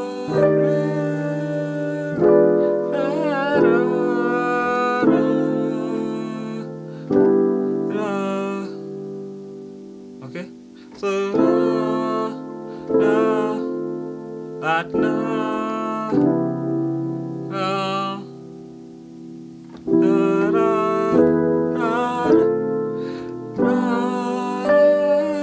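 Keyboard on an electric piano voice playing a slow progression of extended gospel-style chords (add9, minor 11th, 6♯11 sus2). A new chord is struck about every second, and one chord is held for several seconds just after the middle.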